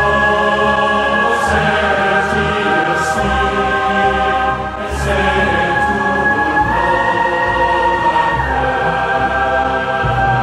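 Background music with a choir singing held chords that change every second or two over a steady low bass.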